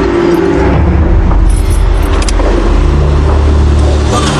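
Car engine running, a low steady rumble that comes up about half a second in.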